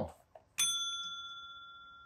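A single bright bell ding struck about half a second in, ringing on and fading slowly over about a second and a half: a notification-bell sound effect.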